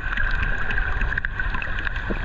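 Water moving against a camera's waterproof housing just under the sea surface: a steady, muffled low rumble with scattered sharp clicks and crackles.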